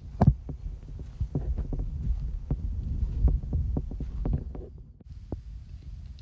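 Microphone noise: a low rumble with many soft, irregular knocks, loudest just after the start and thinning out about five seconds in.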